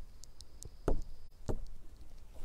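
Two dull knocks, the louder about a second in and the next about half a second later, among faint sharp clicks.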